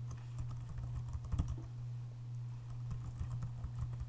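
Computer keyboard being typed on, a run of quick, irregular key clicks, over a steady low hum.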